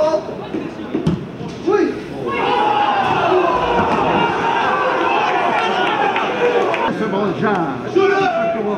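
Football commentator's voice, with a thud about a second in and then a long, sustained stretch of voice lasting several seconds in the middle.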